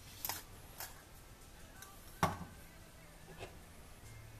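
A few light clicks and knocks from small objects being picked up and set down on a wooden workbench. The loudest is a single knock a little over two seconds in.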